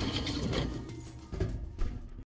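Metal muffin tin sliding onto a wire oven rack, with clicks and rattles of metal on metal and a sharp clank at the start, over background music.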